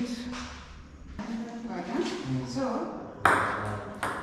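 Table tennis ball clicking off paddles and the table in a rally, in a large hall, with voices underneath and a louder burst a little over three seconds in.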